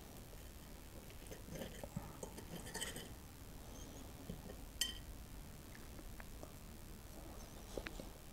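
Faint clicks and scraping of a metal server and fork against a china plate as a piece of sticky monkey bread is cut, with one sharp clink a little before five seconds in.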